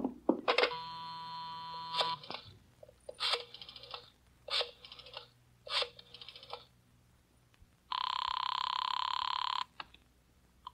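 Telephone sound effects. A steady buzzing dial tone lasts about a second and a half, followed by three short runs of rotary-dial clicks as a number is dialled, then a single loud buzzing ring of about two seconds near the end as the call goes through.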